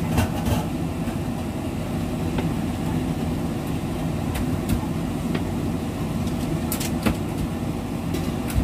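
Steady low hum and rumble while broccoli cooks in a non-stick wok, broken by a few sharp pops and clicks from the pan.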